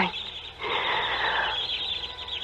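Radio-drama sound effect of many rats squeaking and chittering, a steady busy chatter running throughout, with a soft breathy sound in the middle.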